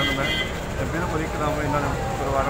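A man talking over a steady low rumble of street traffic.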